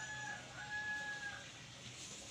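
A rooster crowing: a short level note, then a longer held note that ends about one and a half seconds in.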